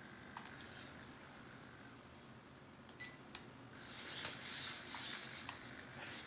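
Hexapod robot's hobby servo motors whirring in a series of short bursts as the legs step, starting about four seconds in after a mostly quiet stretch with a few faint clicks.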